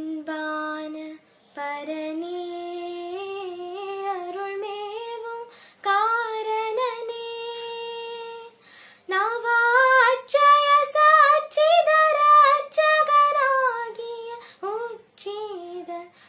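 A girl singing a Tamil devotional song solo and unaccompanied, in long held, ornamented phrases with short breaths between them. The line climbs higher and grows louder about nine seconds in.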